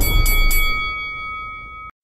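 Logo transition sting: a deep whoosh fading out under a bright bell-like chime that rings steadily and cuts off abruptly near the end.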